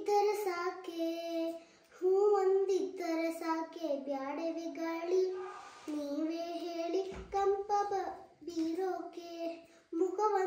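A young girl singing unaccompanied, holding notes that step up and down in short phrases with brief breaks between them.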